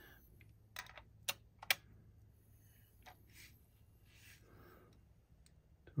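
Three sharp, light metallic clicks within the first two seconds, from an adjustable wrench working the regulator sub-assembly of an airgun to raise its set pressure, then faint handling rustle.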